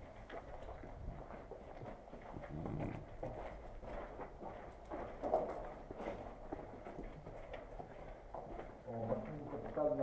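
Footsteps walking on loose gravel and rubble over a concrete floor: a run of short, irregular steps.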